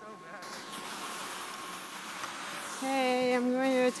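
A hiss of skiing downhill over packed snow builds up. Near the end a person's voice holds one long, slightly wavering note for about a second.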